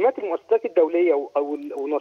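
Speech only: a man talking over a telephone line.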